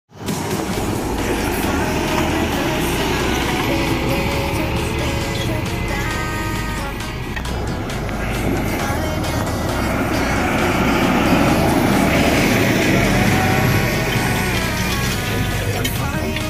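Claas Axion tractor engine running steadily under load as it pulls a wide cultivator through the soil, with pop music playing over it.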